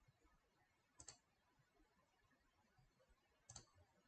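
Near silence: room tone with two faint, sharp clicks, one about a second in and another near the end.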